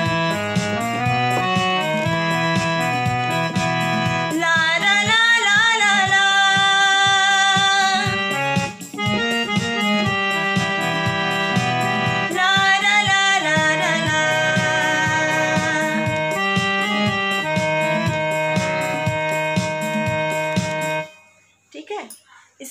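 A song with keyboard accompaniment and a voice singing the 'la ra la la la' refrain, with wavering held notes. It cuts off suddenly near the end.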